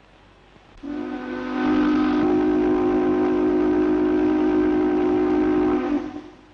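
Steel-mill steam whistle blowing one long blast, a steady chord of several tones that starts about a second in, swells, then cuts off near the end.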